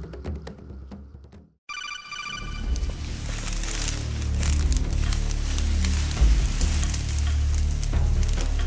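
Percussive background music cuts off about a second and a half in, and a short chiming jingle follows. From about three seconds in, a loud crackling rustle of tall dry grass stalks being pushed through runs over continuing music.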